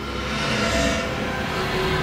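Eerie sound effect: a noisy whoosh over a steady drone that starts suddenly, swells for about a second, then holds.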